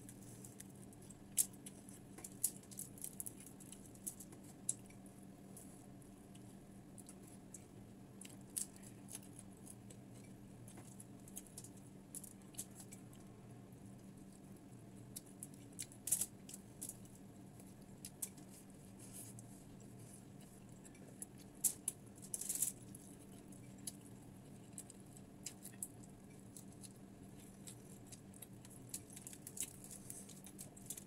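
Eating sounds at close range: scattered small crisp clicks and crackles from fingers picking apart crispy fried tilapia on aluminium foil and from chewing it, with a denser burst about two-thirds of the way through. A faint steady hum lies underneath.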